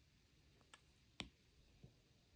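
Three faint taps on an iPad's glass screen from a stylus tip or fingernail, the middle one the sharpest.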